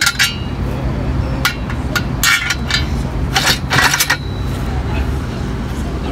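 Metal knocks and clinks from an improvised iron leg-extension machine being adjusted: a handful of separate impacts, the last two close together. A steady low hum of traffic runs underneath.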